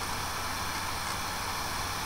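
Steady hiss with a faint low hum underneath: the background noise of a webcam microphone in a small room, with no other sound.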